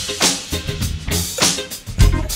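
Drum kit playing a live funk break with little else under it: kick drum thumps and sharp snare and rimshot hits, several strokes a second.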